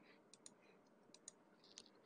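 A few faint clicks of a computer mouse, some in quick pairs, over near-silent room tone.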